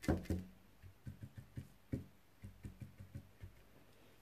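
A stiff brush being jabbed repeatedly onto a metal number plate to stipple on paint and rust: a few sharper taps at the start, then a run of light, uneven taps a few times a second.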